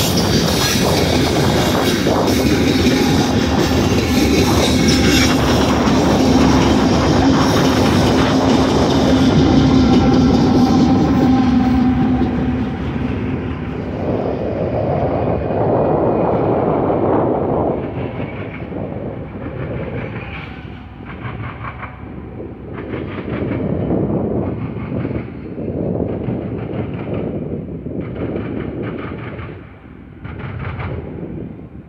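Freight train of loaded coal gondolas rolling past, wheels clacking over the rail joints, with a steady drone as the trailing diesel locomotives go by. After about the halfway point the sound fades as the train moves away, leaving a receding, rhythmic clickety-clack.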